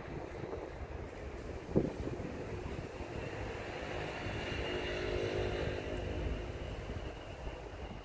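Wind rumbling on the microphone, with a faint motor hum that swells in the middle and fades again, and a single knock about two seconds in.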